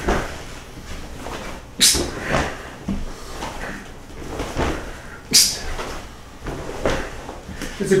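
Karate side kicks thrown in silence: two sharp swishes about three and a half seconds apart, one with each kick. Softer shuffles and light thuds of bare feet shifting on a wooden floor come in between.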